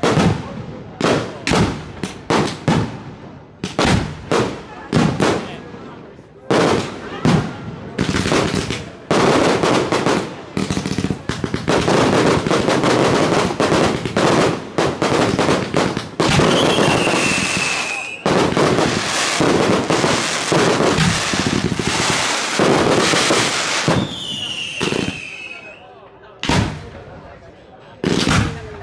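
Fireworks display: a quick series of bangs from bursting shells, building into a dense, continuous crackling barrage through the middle. Two high falling whistles sound within it, one about halfway through and one near the end, and the barrage then thins back to single bangs.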